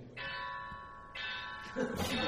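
A metal gong struck twice, about a second apart, each stroke ringing with bright overtones and fading away.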